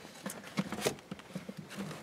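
Handling noises from a car seat and its vehicle seat belt being secured: a run of light, irregular clicks and taps, the most distinct a little under a second in.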